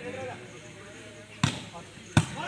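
A volleyball struck hard by hand once, a sharp smack about one and a half seconds in: a serve coming over the net. Faint background voices run underneath.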